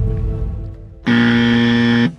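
A deep boom sound effect fading away, then, about a second in, a harsh 'wrong answer' buzzer that holds one steady tone for about a second and cuts off abruptly. The buzzer signals a mistake.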